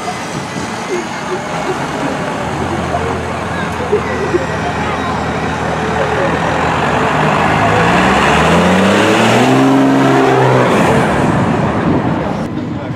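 A car engine accelerating and driving past, its pitch climbing for a few seconds and loudest about ten seconds in before it drops away, over people talking.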